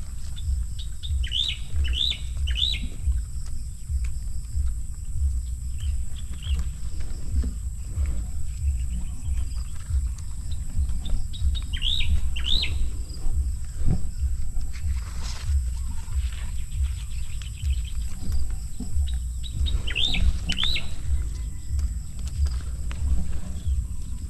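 A small bird chirping in three short runs of two or three quick calls each, spaced several seconds apart, over a constant low rumble.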